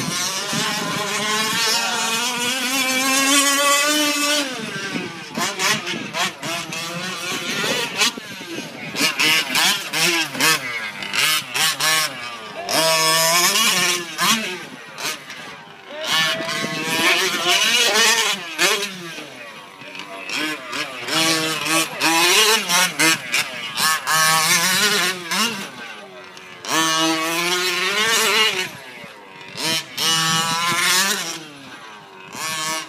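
Small two-stroke gas engine of a 1/5-scale RC short course truck racing around a dirt track, revving up and easing off again and again with the throttle. Its pitch rises and falls every second or two, with brief drops in loudness.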